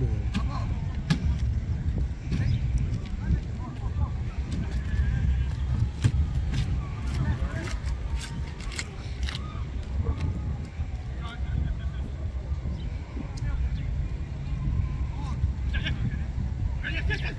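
Footballs being kicked on grass, sharp thuds every second or few, with distant shouts of players over a steady low rumble.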